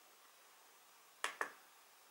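Two sharp clicks in quick succession, a little over a second in: a laptop trackpad's button pressed and released for a right-click.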